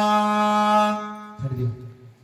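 A man chanting a Sanskrit mantra holds the last syllable on one long, steady note that fades out about a second and a half in. A lower man's voice follows briefly.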